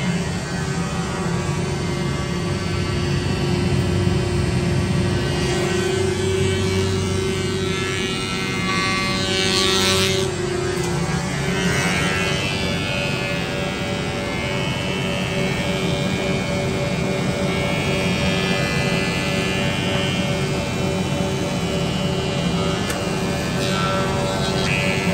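Woodmizer MP360 four-sided planer running, its motors and cutterheads giving a steady whine of several fixed tones over a low rumble. About halfway through, one tone starts to pulse on and off.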